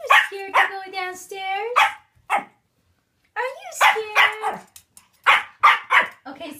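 Pomeranian puppy barking and yipping in a run of short high calls, with pitch-sliding whines in the middle and two sharp barks near the end. The puppy is barking from frustration at food on the stairs that he won't go down to reach.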